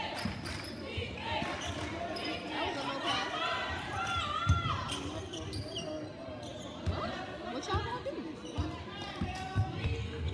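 Basketball bouncing on a gym floor, several separate thumps, under the echoing chatter of a crowd in a large hall.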